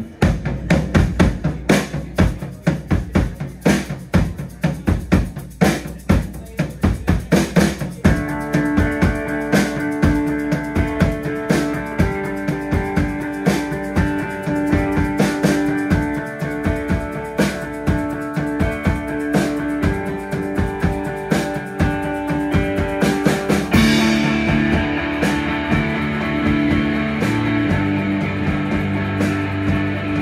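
Live indie rock band starting a song: the drum kit plays a steady beat alone, sustained keyboard chords join about a quarter of the way in, and electric guitars and bass come in about three-quarters through, filling out the sound.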